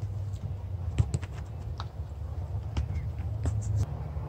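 Scattered light taps and knocks of a soccer ball being touched and played on grass during a dribbling drill, over a steady low rumble.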